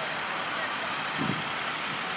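Steady running noise of a row of idling school buses, with a faint short voice-like sound a little over a second in.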